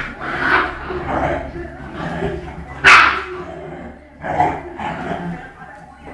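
Two young Dogo Argentino dogs scuffling and barking, a run of short, sharp barks and yips, the loudest about three seconds in and another about four and a half seconds in.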